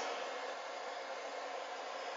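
Hands-free pet dryer blowing a steady stream of air from its flexible hose nozzle.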